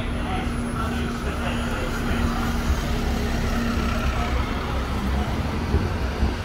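City street traffic with buses' engines running, a steady low rumble with a hum that stops about four seconds in, and people talking in the background.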